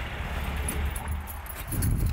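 The 1962 Volkswagen Microbus's non-stock engine idling with a steady low rumble that swells near the end. Light metallic jingling, like keys, clinks over it from about half a second in.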